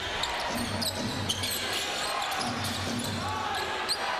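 Basketball game noise on a hardwood court: the ball bouncing as it is dribbled, short high sneaker squeaks, and a steady murmur of the arena crowd.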